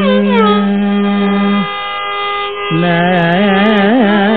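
Carnatic classical melody in raga Purvikalyani, voice with violin over a steady drone and no percussion: a gliding, ornamented line settles onto a long held note, breaks off for about a second near the middle, then comes back on a lower note and rises.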